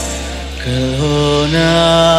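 Male vocalist singing a slow, drawn-out melodic line of a ballad live into a microphone. His voice fades at the end of one phrase, then enters a new one about half a second in, rising in steps to a held note. A low sustained accompaniment note runs beneath.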